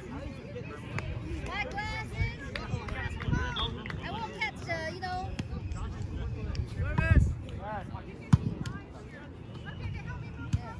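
Several voices talking and calling out across an outdoor volleyball court, with one sharp smack of a volleyball being hit about eight seconds in.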